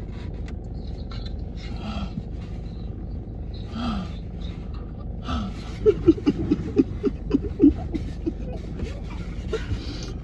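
A man's voice making a few short moans, then breaking into bursts of laughter about six seconds in, over a steady low rumble inside a parked car.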